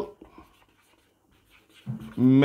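Marker pen writing on a whiteboard: a few faint, short scratchy strokes, then near quiet.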